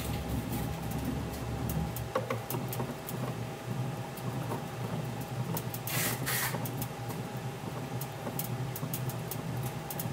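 A bat rolling machine turns a baseball bat between its rollers, giving a steady mechanical hum with scattered light ticks. There are a couple of brief hissing bursts about six seconds in.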